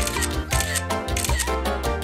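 Background music with a steady beat, with a smartphone camera's shutter click as a photo is taken.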